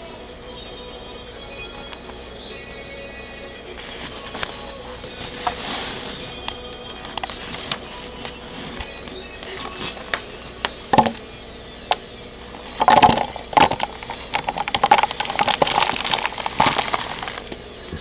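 Soil debris with rocks, pebbles and roots being handled on a sheet of paper and poured into a cut-off plastic bottle. The paper crackles and clumps rattle against the plastic. There are a few scattered clicks at first, then a dense run of crackles and clicks in the second half.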